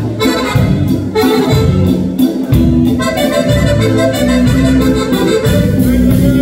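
Two piano accordions playing a liscio dance tune live, the melody carried over a steady bass and chord accompaniment that pulses about twice a second.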